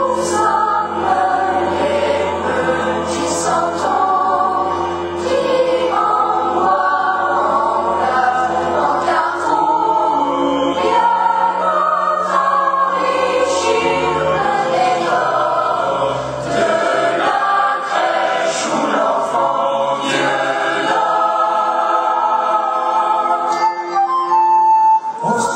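Boys' and men's choir singing in French, several voices holding and moving between sustained notes. A low held note runs beneath the voices and drops out about two-thirds of the way through.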